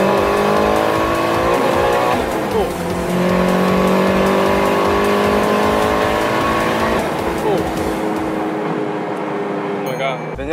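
Turbocharged engine of a modified 2003 Mitsubishi Lancer heard from inside the cabin under hard acceleration. Revs climb steadily, fall at an upshift about two seconds in, climb again, and fall at another upshift about seven seconds in.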